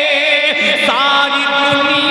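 A man singing a naat, a devotional praise poem, into a microphone. He holds long notes, and about halfway through he starts a new note with an upward pitch bend.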